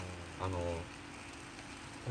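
A man's brief, low hesitation murmur, then a lull with only faint, steady background noise.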